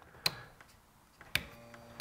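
Three sharp clicks of a marine rocker switch being toggled on a boat's switch panel, with a faint brief hum between the second and third clicks.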